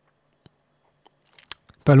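Quiet room tone with a few faint, short clicks, then a man starts speaking near the end.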